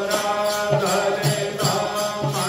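Hindu devotional hymn to Krishna sung by a single voice over instrumental accompaniment with held low notes.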